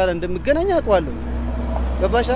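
A man speaking briefly, then a steady low rumble that swells in the second half.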